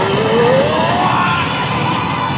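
Game audio from a Hokuto no Ken Kyouteki pachislot machine: music with a sound rising steadily in pitch over about a second, over a dense steady background din.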